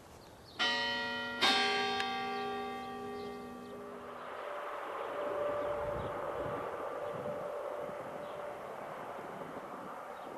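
A church bell strikes twice, under a second apart, each stroke ringing on and fading over about three seconds. Then a Rhaetian Railway train is heard running on the line: a steady rumble with a faint held hum.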